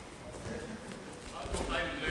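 Two judoka hitting a tatami mat in a takedown, a dull thud about one and a half seconds in. Before it come light knocks of bare feet moving on the mat.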